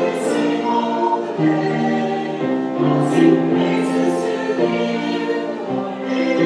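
Church choir of mixed voices singing in harmony, holding notes in chords, with the sung 's' sounds of the words coming through briefly.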